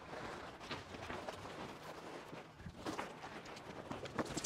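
Faint rustling and swishing of a plastic bubble pool cover being pulled off the water and folded back, with a few light ticks.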